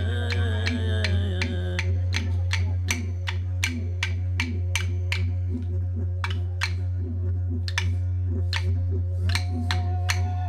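Aboriginal Australian song accompaniment: a didgeridoo holds a steady low drone while wooden clapsticks beat a regular rhythm. A man's singing voice ends about two seconds in, and a higher held note comes in near the end.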